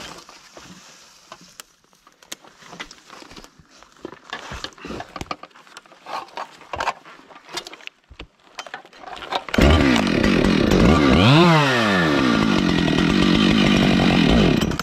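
Faint scattered clicks and knocks of handling, then about two-thirds of the way in a two-stroke chainsaw suddenly starts and runs loudly, revving up once and dropping back before running on steadily.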